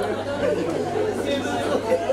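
Many people in the audience talking over one another at once, a steady murmur of overlapping voices that echoes in a large hall.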